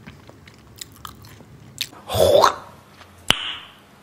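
A person chewing a mouthful of pancake, with faint wet mouth clicks. There is a short louder mouth sound about two seconds in and a sharp click a little after three seconds.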